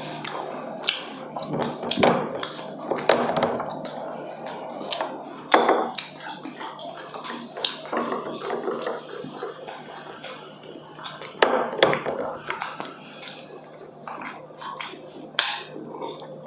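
Close-miked eating sounds: chewing and wet mouth smacks with scattered clicks, and occasional clinks of a spoon and dishes on metal sizzling plates.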